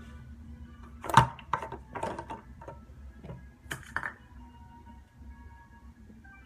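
Handling of a glass drink bottle: a run of clicks and knocks, the loudest about a second in and several more up to about four seconds in, over faint background music.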